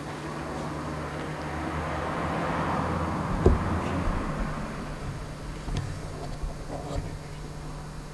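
A vehicle passing: a rush of noise that swells and fades over a few seconds, with one sharp knock near its peak, over a steady low hum.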